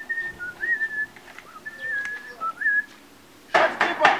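A person whistling a short tune, a single clear note line that steps and slides between held notes and stops about three seconds in. Near the end comes a short, loud burst of noise.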